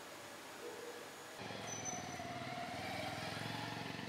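A motor vehicle engine running with a low, even pulsing. It comes in suddenly about a second and a half in.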